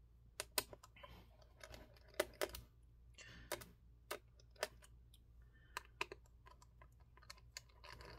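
Faint, irregular light clicks as a small PH1 Phillips screwdriver backs out the laptop battery's tiny screws and the screws are handled and set down.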